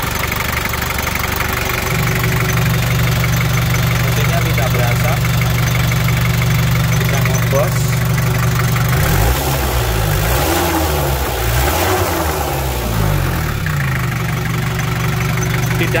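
Daihatsu Taft GT's four-cylinder diesel engine idling steadily and crisply, a healthy-sounding idle. For a few seconds in the middle its note wavers up and down before settling back to a steady idle.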